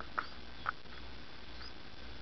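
Northern cardinals squeaking and chirping at the nest: two short squeaks in the first second, then a faint rising chirp.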